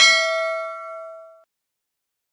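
Notification-bell ding sound effect: one bright bell strike that rings on with several clear tones and fades away about a second and a half in.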